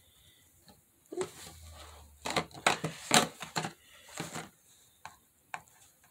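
A doll's cardboard and plastic packaging being handled and pulled apart to free the doll. It makes a quick run of clicks, knocks and rustles from about a second in, densest near the middle.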